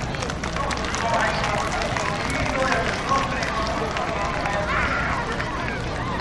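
Crowd applauding steadily, with crowd voices mixed in.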